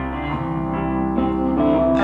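Live band music in an instrumental gap between vocal lines: guitar and piano holding sustained notes.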